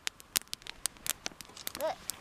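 Wood campfire crackling, with irregular sharp pops several times a second.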